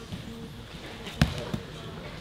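A sharp slap on the grappling mats about a second in, followed by a smaller knock, over background gym chatter.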